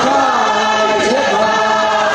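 A congregation singing together as a choir of many voices, holding steady notes in chorus, with one voice gliding above them.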